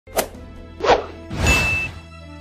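Logo intro sound design: two sharp hits a little over half a second apart, then a swelling swoosh with a thin high tone held through it, over a low musical drone.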